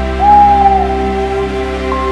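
A single whistled owl hoot, a pure note that slides up, holds for about half a second and falls away, over steady calm background music.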